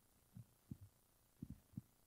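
Near silence, broken by about five faint, irregular low thumps.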